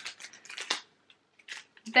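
Crisp rustles and clicks of a small packaged pin being handled, with soft laughter at the start and a few short clicks near the end.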